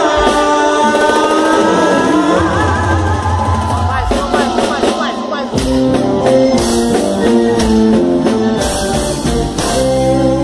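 Live band music with a male singer holding long sung notes; about five and a half seconds in, the electric guitar and drums break into a choppy rhythmic riff with sharp hits.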